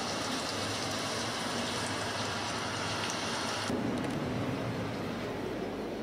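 Rain sound played as a sleep aid: a steady hiss of falling rain. A little more than halfway through, its higher part drops away and it goes duller.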